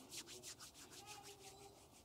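Faint rubbing of palms together, picked up close by a lapel microphone, in quick even strokes, about six a second, that stop shortly before the end.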